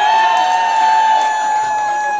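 One audience member holding a long, high cheer at a steady pitch over a cheering crowd.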